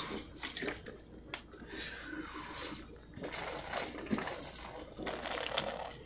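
A man taking a drink close to the phone's microphone: liquid moving and swallowing, with scattered small clicks and rustles as the drink and phone are handled.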